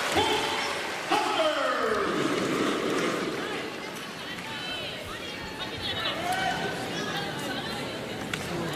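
Arena crowd cheering and shouting after a point. A loud falling shout comes about a second in, then the cheering settles into a steady crowd hubbub.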